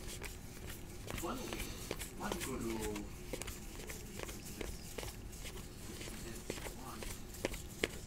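Trading cards from a freshly opened pack of 2018 Score football being thumbed off one at a time from one stack onto another: a faint, irregular string of soft ticks and slides. A faint voice murmurs from about one to three seconds in.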